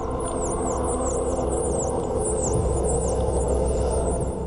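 Dolphin whistles: a quick run of high chirps, several a second, each dipping and rising in pitch, over a sustained low musical drone.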